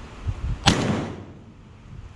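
A single 12-gauge shotgun shot at a flying bird about two-thirds of a second in, a sharp crack that rings off over about half a second.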